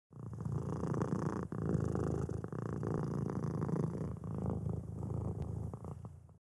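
Domestic cat purring, a low continuous purr with a short break about a second and a half in.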